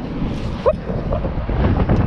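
Wind buffeting the microphone over a steady low rumble of road traffic, with one brief rising whoop about two-thirds of a second in.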